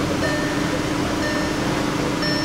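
A Volkswagen Beetle's warning chime beeping about once a second, heard inside the cabin over a steady hum and rushing noise while the engine is left running.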